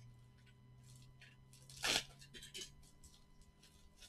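Faint crinkling and rustling of a plastic padded mailer being handled and worked open, with one short, louder noise about two seconds in.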